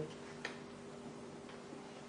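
Quiet room tone with a faint steady hum and a single light click about half a second in.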